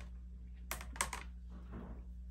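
A few sharp plastic clicks and taps: a clear quilting ruler with a suction-cup grip handle being released, lifted and set down on a cutting mat. Two of the clicks come close together about a second in, and a soft rustle of a fabric strip being picked up follows near the end.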